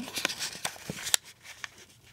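A sheet of paper being handled and folded by hand on a table: scattered crinkles and soft taps, with one sharper crackle a little past halfway, getting quieter toward the end.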